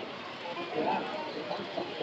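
Indistinct voices and chatter of people in a large hall, with faint music in the background.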